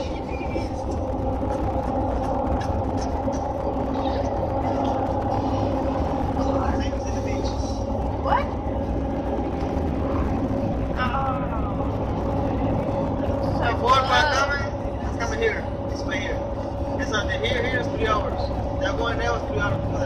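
Steady road and engine rumble inside a moving car's cabin, with faint, brief voices now and then.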